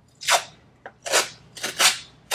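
Blue painter's tape being pulled off its roll in short tugs, giving four quick rips and a fainter one.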